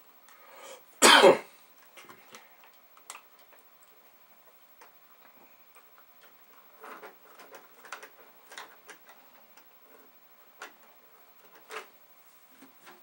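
A single cough about a second in, then scattered faint clicks and ticks of small parts being handled with a hand tool on an opened VIC-20 keyboard.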